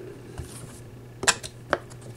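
Two sharp plastic clicks, the second about half a second after the first, as the clear bobbin cover of a Janome MC9000 sewing machine is handled and fitted against the metal needle plate. A low steady hum runs underneath.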